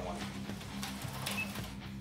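A small HO-scale slot car motor whirring faintly on the track, fading near the end, over a steady low hum.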